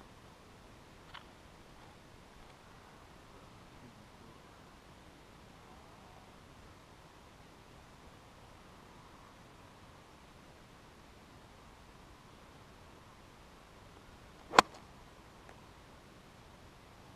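A single sharp crack of a golf iron striking the ball off the turf near the end, the loudest thing by far, over faint outdoor background with a soft tick about a second in.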